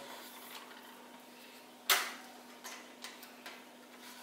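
A steel-wire snare frame with a wooden board being handled and set down: one sharp knock about two seconds in, then a few light clicks.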